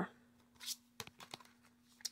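Faint handling of a clear plastic storage album and acrylic ruler: a soft rustle, then a few light clicks about a second in, over a faint steady hum.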